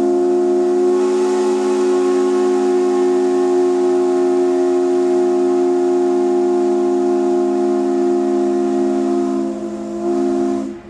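A ferry's ship horn sounding one long, steady blast, a low chord of several tones held without a break.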